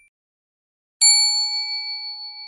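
A bell 'ding' sound effect struck once about a second in, a clear ringing tone that holds and slowly fades with a slight shimmer. The last of an earlier ding dies away at the very start.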